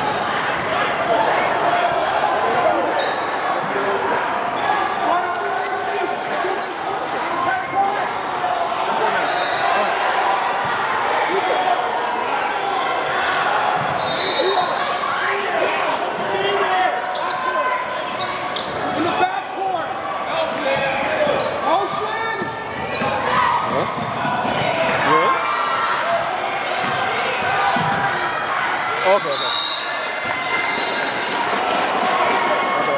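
A basketball bouncing on a hardwood gym floor during a youth game, amid continuous chatter and calls from players and spectators in a large gym hall.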